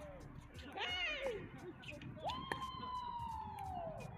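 A person's drawn-out, high-pitched shout: a short rising-and-falling yell about a second in, then one long call that holds and slowly falls in pitch through the last second and a half. A sharp knock comes through partway into the long call.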